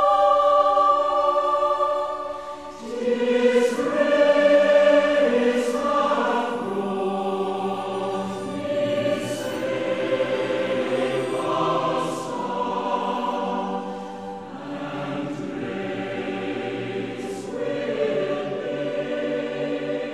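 Choir singing slow music in long held chords that change every few seconds, with a brief dip in loudness about two and a half seconds in.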